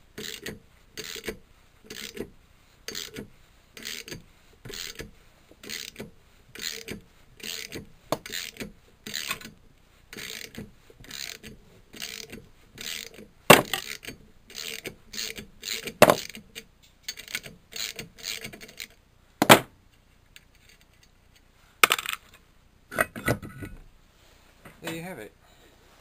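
Ratchet spanner clicking in short, regular strokes, about three every two seconds, as it winds the flywheel nut off a small Suffolk Iron Foundry stationary engine. A few louder, sharp metallic knocks break in, and the clicking stops a few seconds before the end.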